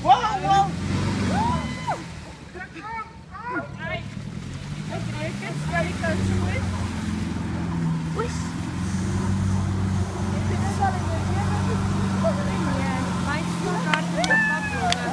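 Isuzu 4x4 pickup's 3-litre diesel engine working hard as the truck drives through deep water: it revs up, drops back, then holds high and steady under load from about six seconds in. Water sloshes around the truck, and people shout early on.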